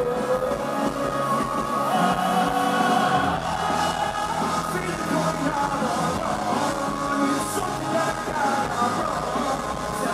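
A live rock band playing a song through the venue's sound system, recorded from within the concert crowd.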